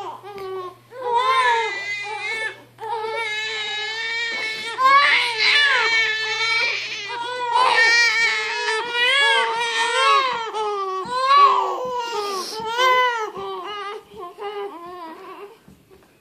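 Twin infants crying in their car seats: long, loud, unbroken cries, sometimes overlapping, that break into shorter, quieter cries near the end.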